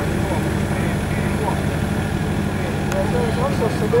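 Excavator engine running steadily with a low hum while the bucket is held and eased down over a matchbox, with crowd voices chattering around it.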